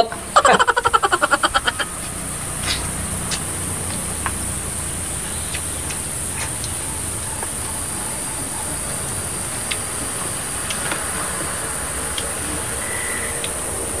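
Steady outdoor hiss with a constant high-pitched band, plausibly insects in the rice paddy. A man's short pulsed vocal sound, like a chuckle, comes in the first two seconds. Scattered faint clicks of eating by hand follow.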